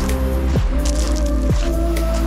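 Background music with a heavy bass and held notes, broken by bass notes that slide downward a couple of times.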